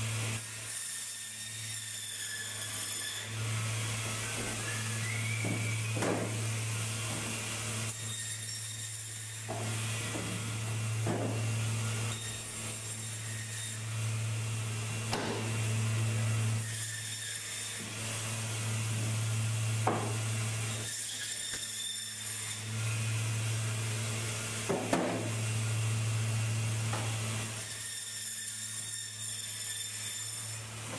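Braher Medoc table band saw running with a steady motor hum, its blade cutting through fish in repeated passes a few seconds long. Short knocks fall between some of the cuts.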